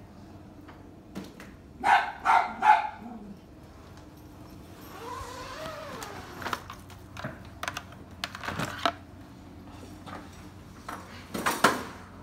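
A dog barking three times in quick succession about two seconds in, with another loud, sharp burst near the end.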